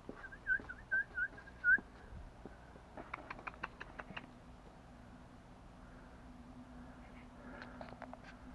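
A person whistling a quick string of about six short, pure, up-and-down notes, then stopping. About three seconds in there is a rapid run of about eight short ticks, and a few more come near the end.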